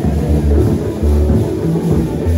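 Music with a strong, steady bass line, guitar and drums.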